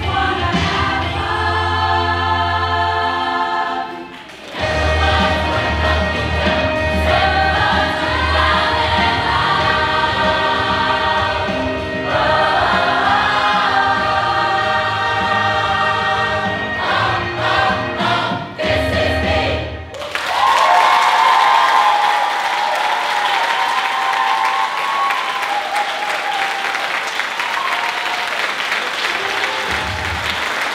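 Choir singing in harmony, with a short break about four seconds in. The song ends about two-thirds of the way through, and loud audience applause and cheering follow.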